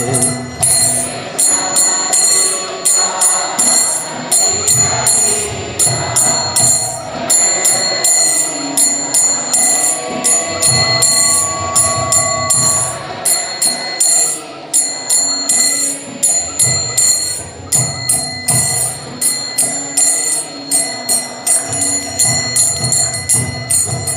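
Small brass hand cymbals (karatalas) struck in a steady rhythm, their ringing carrying between strokes. Other accompanying instruments play under them in an instrumental interlude between sung verses.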